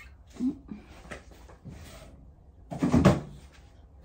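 Knocks and bumps of household objects being handled, a small one about half a second in and the loudest cluster just before three seconds in.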